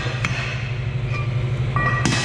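Large metal spanner wrench clinking against the nut on a milk tank's stainless outlet fitting as it is tightened, over a steady low machine hum.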